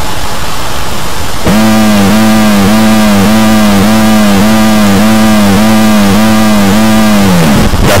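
Loud, distorted electronic tone. It opens with about a second and a half of hissing noise, then becomes a buzzing pitched note that wobbles up and down a little over twice a second before dying away near the end.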